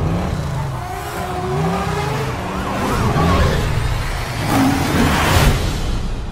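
A car engine revving up and down several times over a dense, noisy film-soundtrack mix, loudest near the end.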